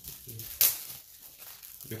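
Plastic wrapping of a sticker album pack crinkling and tearing as it is pulled open by hand, with one sharp, loud crackle about half a second in.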